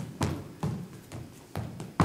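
Dance shoes stepping and tapping on a hardwood dance floor in a steady rhythm, about two sharp steps a second, as a swing line-dance step (Susie Q) is danced.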